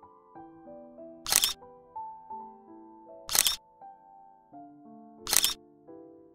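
Soft background melody of single stepping notes, cut three times, about two seconds apart, by a loud camera shutter click.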